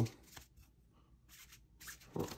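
Faint handling noise of rigid plastic card top loaders rubbing and tapping against each other as they are flipped through by hand, a few brief scrapes, the clearest near the end.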